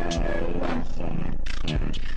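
A person's voice making sounds without clear words, in a few stretches with short breaks between them.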